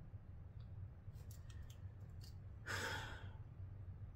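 A woman's sigh: one breathy exhale of about half a second near the end, after a few faint clicks, over a low steady hum.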